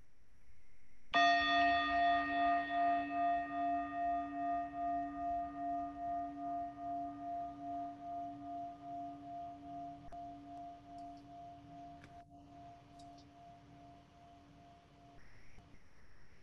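A singing bowl struck once about a second in, ringing on with a slow, pulsing waver as it fades; the ring cuts off abruptly near the end.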